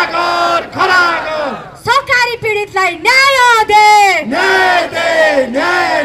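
A woman shouting into a microphone, her voice amplified through horn loudspeakers in a run of short, high-pitched calls, each half a second to a second long.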